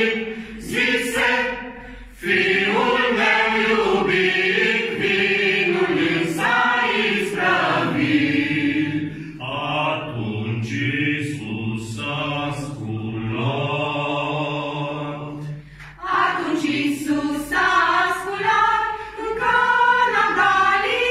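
A mixed group of men and women singing a Romanian Christmas carol (colind) together in unison, in phrases with short breathing pauses about two seconds in and again near sixteen seconds.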